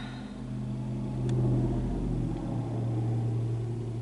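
A vehicle engine running with a steady low hum, and a deeper rumble that swells and then drops away about two and a half seconds in.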